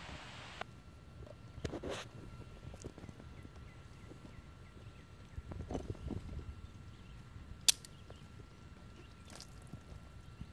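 Quiet hand-tool handling on a Honda XL600R dirt bike: scattered small clicks and rustles as locking pliers are worked on the bike, with one sharp click a little past two-thirds of the way through.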